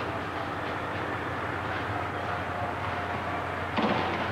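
Steady rumbling noise with a faint held hum beneath it.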